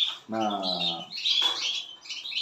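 Caged canaries and goldfinches chirping and twittering continuously, high-pitched. A man's voice sounds briefly about half a second in.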